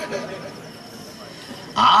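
A man's voice speaking through a microphone pauses briefly and dies away. Near the end it comes back loud, held on a steady pitch in a drawn-out, chant-like phrase.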